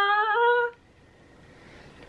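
A woman's long, drawn-out "aah" of delight at a scent, its pitch stepping up slightly before it stops under a second in.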